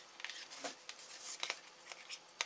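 A small plastic RC servo and its wires being handled in the fingers: a few faint clicks and rustles.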